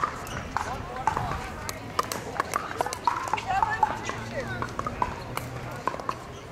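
Irregular sharp pops of pickleball paddles hitting balls on the surrounding courts, over voices of players and onlookers talking.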